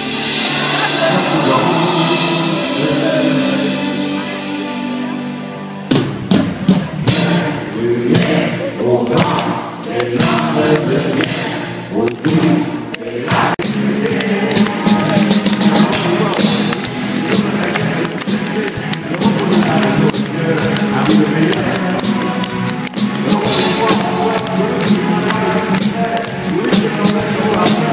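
Live band music in an arena, recorded from the crowd: held chords for the first few seconds, then about six seconds in a driving drum beat kicks in, with the audience clapping along.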